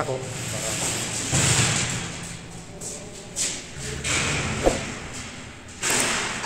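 Indistinct voices in a bare room, with handling noise and one sharp knock about three-quarters of the way through.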